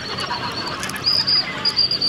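Murmur of an outdoor crowd of spectators, with a high-pitched chirping trill pulsing rapidly over it, loudest in the second half.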